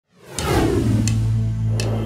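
Intro logo sting: a falling whoosh that settles into a held low bass note, with a short bright tick roughly every three quarters of a second.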